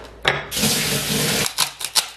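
A kitchen tap runs for about a second, starting and cutting off abruptly, followed by a few short handling sounds.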